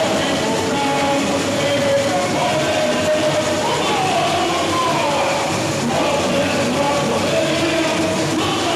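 Samba-enredo sung live by a large crowd in unison, over a samba percussion band. It is loud and steady throughout, with the massed voices riding above a dense wash of drums.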